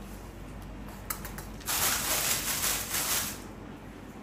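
A couple of sharp clicks, then a burst of rustling, scraping noise lasting about a second and a half.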